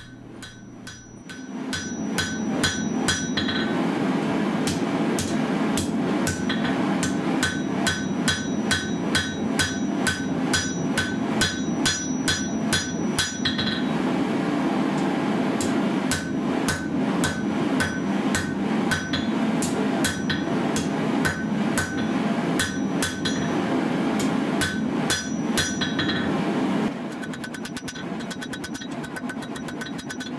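Hand hammer striking a red-hot steel blade on an anvil: a long run of regular blows, each with a bright metallic ring, with a brief pause about halfway. The blows become lighter and quicker near the end, over a steady low rushing noise.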